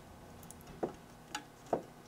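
Faint, sharp clicks, three clear ones a little under half a second apart, as a front-panel knob on a Tektronix FG502 function generator is turned by hand.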